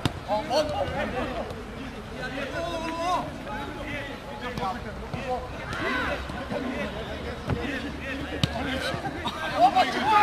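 Footballs being kicked with short, sharp knocks, among the shouts and calls of players training together.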